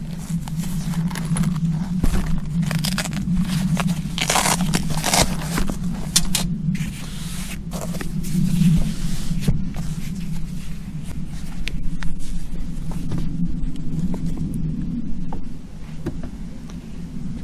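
A fabric-covered folding solar panel being unfolded and laid out on a glass table: irregular rustling and scraping of its cloth cover and panels, busiest in the first half, over a steady low hum.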